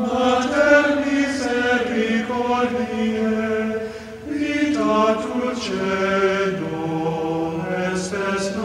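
Liturgical chant sung just before the Gospel is read: a voice holding long notes that step slowly up and down, with a short break for breath about four seconds in.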